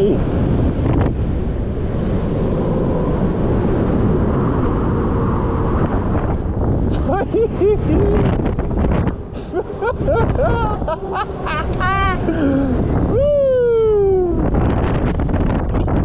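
Loud wind rushing over the microphone of a chest-mounted camera as a booster ride's arm swings the rider through the air. From about seven seconds in, people yell and whoop, with a long falling yell near the end.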